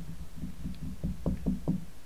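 A quick run of light taps on a tabletop from a hand, about six a second, with three sharper knocks in the second half.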